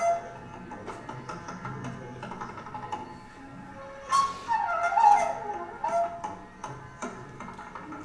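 Hindustani classical jugalbandi of bansuri flute and tabla: the flute plays gliding melodic phrases over quick tabla strokes. A quieter, mostly tabla passage gives way about four seconds in to a louder flute phrase with falling slides.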